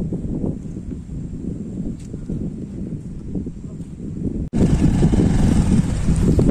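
Motorcycle engine running at low speed on a rough dirt track, a rumbling drone. About four and a half seconds in the sound cuts out for an instant and comes back louder, with wind buffeting the microphone.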